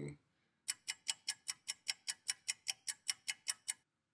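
Ticking-clock sound effect: a steady run of sharp ticks, about five a second, that stops shortly before the end.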